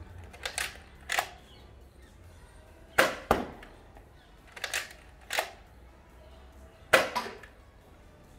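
A Nerf Rival Mercury XIX-500 spring-powered foam-ball blaster being primed and fired over and over. Sharp mechanical clacks come in four clusters about two seconds apart, and the loudest snaps fall near three seconds in and near the end.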